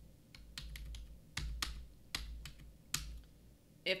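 Keystrokes on a computer keyboard: about a dozen quick, irregular clicks, fairly quiet.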